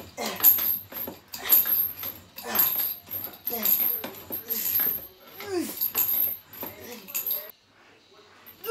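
A man grunting and exhaling hard through his teeth about once a second, straining through each rep of a leg-extension set near failure. Some grunts fall in pitch.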